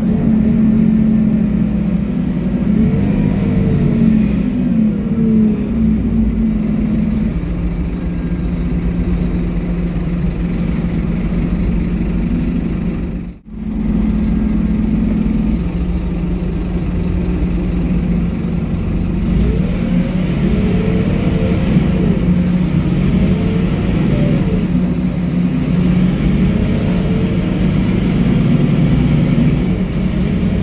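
Scania K230UB bus's rear-mounted five-cylinder diesel engine heard from inside the passenger cabin as the bus drives, pulling and easing off in turn, with a whine that rises and falls in pitch several times. The sound drops out briefly about halfway through.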